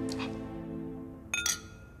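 Two wine glasses clinking together in a toast: two quick clinks about a second and a half in, followed by a short ringing tone.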